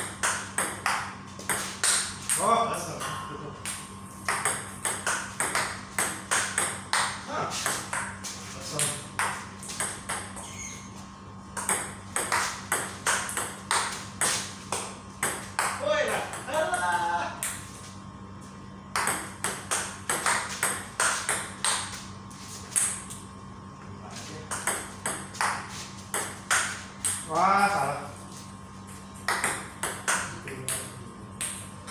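Table tennis rallies: the ball clicking off rubber-faced bats and bouncing on the table in quick alternation, about two to three hits a second, with short pauses between points. One player returns long-distance chops from well back of the table.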